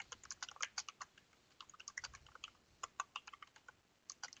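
Typing on a computer keyboard: faint, quick, irregular keystrokes, with a short pause a little after a second in.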